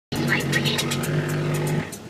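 Bass-heavy music playing loud through a car's subwoofers, a held low bass note under quick, even ticks, cutting off shortly before the end.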